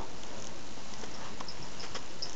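Steady background hiss with a few faint, scattered ticks and taps.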